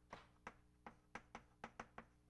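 Chalk on a blackboard as a word is written: a run of about eight faint, short, irregularly spaced taps and clicks of the chalk stick on the board.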